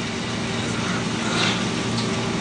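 A steady hum and hiss of background noise with no clear event in it, the noise floor of an old, low-quality classroom recording.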